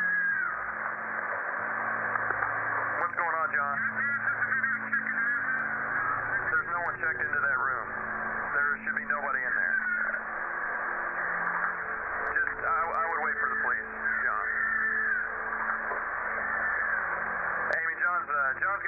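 Two-way radio voices, thin and cut off in the highs, between hotel security staff, alternating with long, wavering screams heard over the same radio-quality sound.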